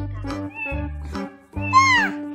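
Children's electronic sound-book button panel playing a short electronic tune with a recorded cat meow over it. The meow comes twice, the second louder near the end.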